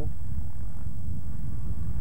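Steady low rumble of wind buffeting an old camcorder's built-in microphone, with a faint thin high whine from the recording.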